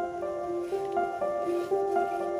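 Soft background music: a gentle melody of held notes that change every half second or so.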